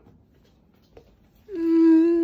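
A voice, most likely one of the children's, holds one long steady note, starting with a slight rise about a second and a half in; before that it is nearly quiet.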